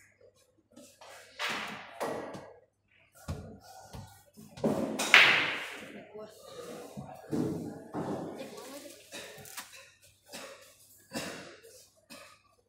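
Pool balls knocking on a pool table as a shot is played, with a loud sharp knock about five seconds in that rings away briefly, amid background voices in a large hall.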